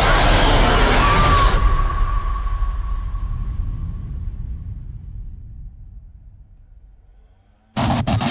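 A single huge cinematic boom, the trailer's title-card impact, that dies away slowly over about seven seconds into a low rumble, with a faint ringing tone in the first couple of seconds. Near the end a stuttering burst of digital glitch noise cuts in.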